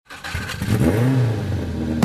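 A car engine revving: the pitch climbs and falls back about a second in, and the sound grows louder.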